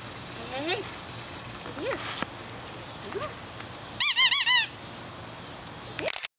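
Sharp, high-pitched squeaks: a few single ones, then a quick run of five or six about four seconds in, the loudest part.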